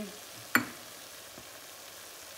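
Diced onion, fruit and spices frying in oil in an enamelled pot over medium heat: a steady, soft sizzle, with one sharp knock about half a second in.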